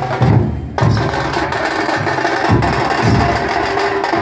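Dhol drums played by a marching troupe: a loud, steady beat of deep strokes about twice a second under a dense layer of sharper stick hits.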